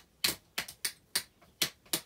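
A quick, uneven run of sharp clicks or taps, about four to five a second.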